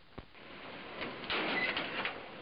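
A car pulling up: noise that swells over the first second and a half, with a brief high squeak near the end.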